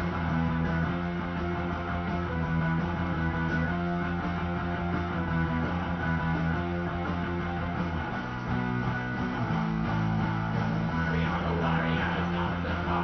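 Guitar-based band music playing, with guitar and bass holding low chords that change about eight seconds in.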